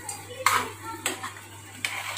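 A metal spoon stirring noodles in a kadhai, with three light clinks of spoon on pan spread through the stirring.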